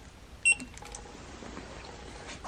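A single short, high electronic beep about half a second in, over a faint low background hum.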